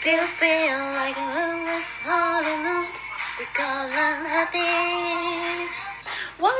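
Two young women singing a pop lyric in heavily accented English into handheld microphones, in several short phrases with long held notes.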